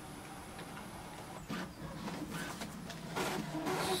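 Brother MFC-J491DW inkjet printer working through an automatic two-sided copy, printing the second side of the page. A faint high whine gives way to short mechanical strokes, and the mechanism runs louder in the last second.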